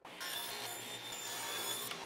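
Table saw ripping a thin strip off the edge of a board riding on a plywood carrier, a steady cutting noise with a high whine that starts abruptly and cuts off just before the end.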